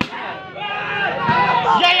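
A volleyball struck once by hand, a single sharp hit at the very start, followed by crowd and player voices with a shout near the end.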